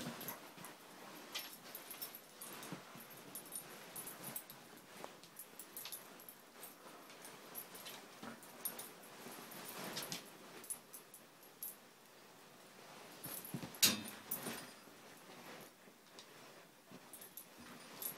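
Two Siberian husky puppies play-fighting: scattered scuffles and short dog noises, fairly quiet, with one sharp knock a little past the middle as the loudest sound.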